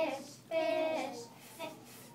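A young girl singing solo: a held note ends just after the start, then a short sung phrase about half a second in slides down in pitch, followed by a pause.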